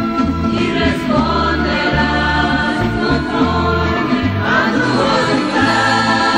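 Evangelical church ensemble's song: a group of voices singing together over instrumental accompaniment with a bass line that steps from note to note.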